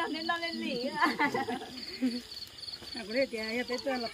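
Crickets chirping in a steady, even rhythm, high-pitched, under people talking.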